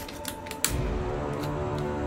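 Clicks and snaps of a Weijiang SS38 Optimus Prime transforming robot figure's parts being moved by hand, several in the first second with the sharpest about two-thirds of a second in. Background music plays throughout, its bass coming in at the same moment as that sharp click.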